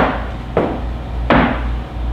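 Two heavy thuds on a wooden stage, one right at the start and one about a second and a half later, over a steady low room hum.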